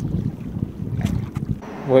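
Wind buffeting a phone microphone out on the water, an uneven low rumble with a few sharp clicks. It drops away shortly before the end.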